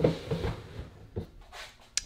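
Plastic tub of a reptile rack being slid back into its shelf, with a few light knocks and a sharp click near the end.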